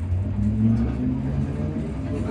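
Train's motors humming, heard inside the passenger carriage: a steady low hum with a few held tones that shift slightly in pitch.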